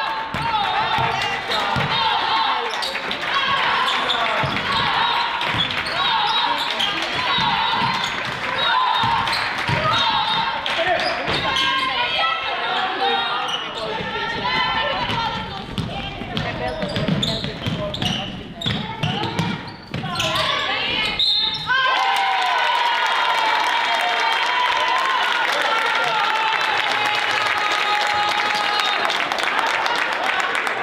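Basketball dribbled on a wooden gym floor, bouncing again and again, with voices calling in a large, echoing sports hall. The bouncing stops about two-thirds of the way through, leaving the voices.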